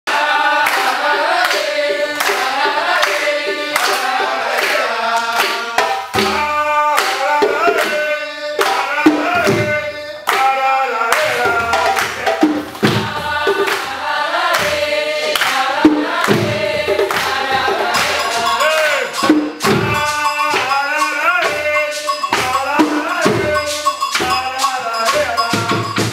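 Singing over hand drumming: voices, at times several together, sing a melody while hand drums are struck throughout.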